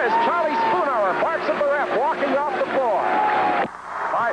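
A man's excited play-by-play basketball commentary over crowd noise, with one word drawn out long near the start. It cuts off abruptly shortly before the end.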